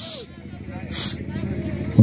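A lull in the Hindi match commentary: faint voices over a steady low hum, with two short bursts of hiss about a second apart.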